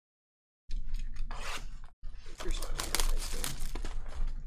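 Cellophane shrink-wrap being torn and crinkled off a sealed trading-card box, in two stretches of crackling with a brief break about two seconds in.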